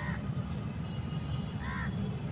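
A bird calling with two short, harsh caws about a second and a half apart, the first right at the start, with faint higher chirps between them, over a steady low rumble.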